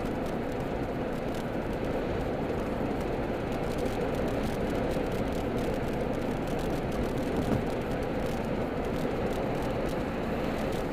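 Steady engine and tyre noise inside the cabin of a car driving at street speed, a low, even rumble.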